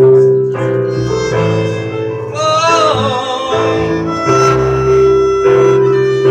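Instrumental passage on violin, upright bass and electric keyboard: the violin plays a melody with vibrato over sustained keyboard chords and a bowed or plucked bass line.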